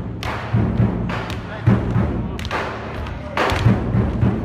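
Heavy thuds every second or so from a line of performers stamping together on a stage, over drum-led music.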